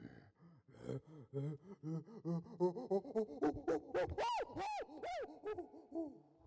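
A chimpanzee pant hoot: a run of low hoots and breathy pants that quicken and climb in pitch, building to a climax of a few loud, high, arching screams about four seconds in, then dropping away.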